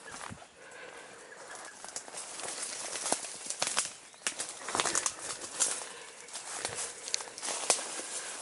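Footsteps crunching on dry leaf litter and twigs, with brushing and rustling of branches, in an irregular walking rhythm.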